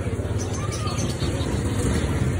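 Busy market street noise: background voices and motor traffic, under a steady heavy low rumble.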